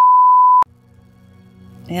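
Test-tone beep of a colour-bar test-pattern intro card: one loud, steady, high pure tone lasting well under a second that cuts off suddenly, followed by a faint low hum, with a voice starting right at the end.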